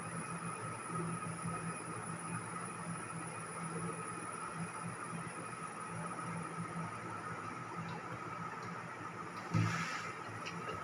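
Steady background hum and hiss of room noise, with one short bump about nine and a half seconds in.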